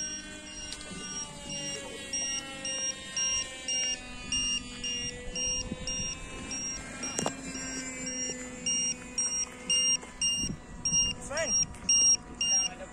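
Electronic beeper of radio-control model gear giving short, high, evenly spaced beeps, about two a second, while the flying wing is readied for launch. A sharp click sounds about seven seconds in.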